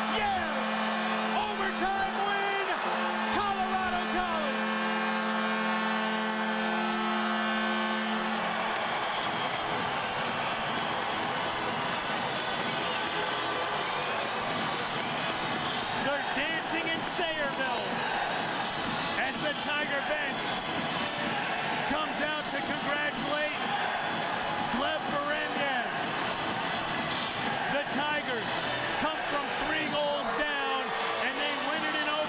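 Arena goal horn sounding a steady chord over a cheering crowd, cutting off about eight seconds in; the crowd goes on cheering and shouting after it.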